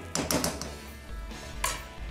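A spatula scraping and stirring arborio rice as it toasts in a saucepan: a few quick scrapes in the first half second and another about three quarters of the way through, over quiet background music.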